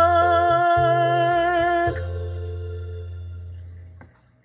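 A man's voice holds the last sung note of a ballad with vibrato over a musical accompaniment. The voice stops about two seconds in, and the accompaniment's final chord fades away.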